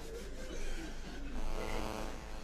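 A man's quiet, breathy laughter, with a faint voiced stretch in the second half.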